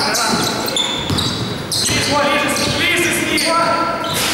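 A basketball bouncing on a hardwood gym floor during a game, with several players calling out to each other in a large, echoing sports hall.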